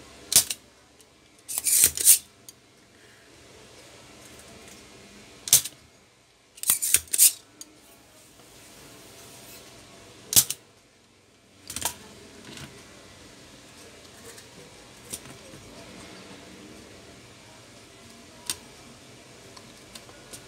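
Spring-loaded desoldering pump being cocked and fired against a circuit board's solder joints: a series of sharp plastic snaps and clicks in bursts over the first dozen seconds, then only a few faint ticks.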